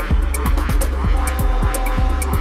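Electronic dance music from a DJ mix: a fast kick drum about three times a second, each hit falling in pitch, over a steady bass line, with hi-hats ticking on top.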